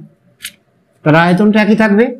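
A brief high hiss about half a second in, then a man's voice speaking for about a second.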